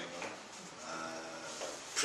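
A man's voice, faint and drawn out, like a held hesitation sound between phrases of speech.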